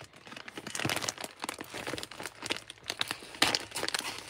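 Plastic poly mailer bag crinkling and crackling irregularly as it is handled and shifted.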